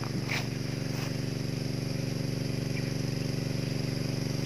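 Small petrol engine of a water pump running steadily at one even pitch, driving the garden sprinklers.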